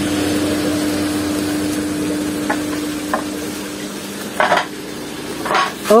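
Water in an aerated koi tank bubbling and fizzing, with a steady mechanical hum that fades out about two-thirds of the way through. A couple of faint clicks in the middle and two brief scuffing noises near the end.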